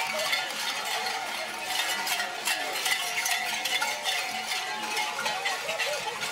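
Bells clanking and jingling in a dense, uneven stream of strikes, with scattered crowd voices.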